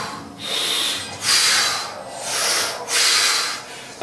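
A man breathing hard from exertion during dumbbell lateral raises: about five loud, hissing breaths in and out over four seconds, each about half a second long.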